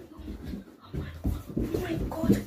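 Low thumps of someone coming down carpeted stairs, with short vocal sounds between them.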